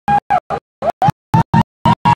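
Loud live band music chopped into short bursts with dead silence between them, about four a second. A held note slides up in pitch about a second in and then holds higher.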